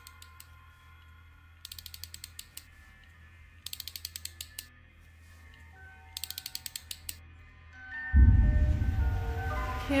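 Trailer sound design: three bursts of rapid, ratchet-like mechanical clicking, about ten clicks a second and each burst lasting about a second, over a faint low drone with a few held tones. About eight seconds in, a loud deep rumbling swell comes in.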